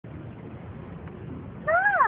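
A cat meowing once near the end, one pitched call that rises and then falls, over a low background rumble.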